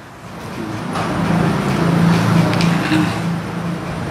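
Low rumble of a running engine, building over the first two seconds and easing slightly toward the end.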